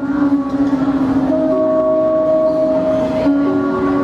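Live acoustic guitar and a male voice holding long, steady notes as the song draws to its close.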